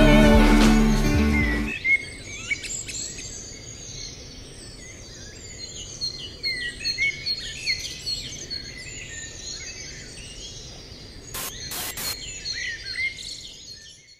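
The end of a song fades out in the first two seconds, then several small birds are heard chirping and singing in short rising and falling calls over a faint outdoor hiss. Three sharp clicks come near the end.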